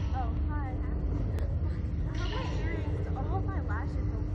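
Women's voices talking, not clearly worded, over a steady low rumble and a faint steady hum from the ride area, with a couple of brief hissing bursts.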